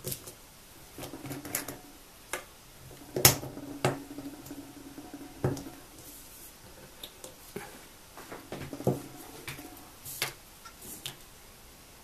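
Scattered small clicks and knocks as a small glass tincture bottle and its cap are handled and opened, with one sharper click about three seconds in.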